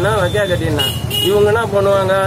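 A man talking loudly over a steady low traffic rumble, with two short high-pitched toots about a second in.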